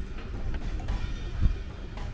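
Low, uneven outdoor rumble picked up by a handheld camera's microphone while walking, with one low thump about one and a half seconds in.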